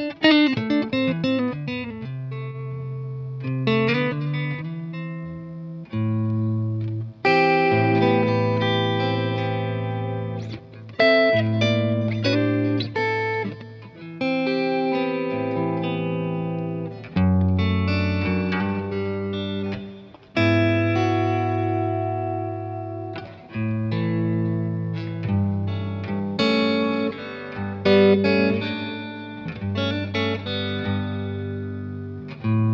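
Telecaster-style electric guitar played through an amp with overdrive, delay and reverb pedals: chords and short phrases struck every second or three, each left ringing and fading out.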